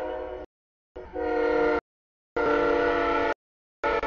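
Freight locomotive air horn sounding a steady chord of several notes in a series of blasts, each about a second long with short gaps. This is the horn warning for a road grade crossing.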